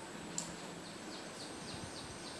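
A bird chirping faintly outdoors, a quick run of short falling notes about three a second, over steady background noise. A single sharp click comes about half a second in, and a faint steady high whine runs beneath.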